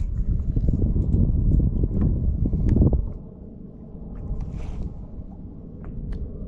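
Wind buffeting the microphone as a loud, uneven low rumble. It eases off about three seconds in, and a few faint clicks are heard through it.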